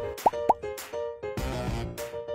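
Cartoon-style 'plop' sound effect: a few quick upward-gliding bloops in the first half-second, over light background music with steady held notes.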